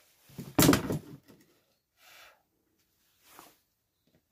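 A metal combination square clatters as it is picked up and set down on the MDF board: one loud, short knock and rattle, followed by two faint light taps.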